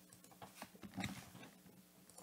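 Faint keystrokes on a computer keyboard: a handful of scattered, quiet clicks.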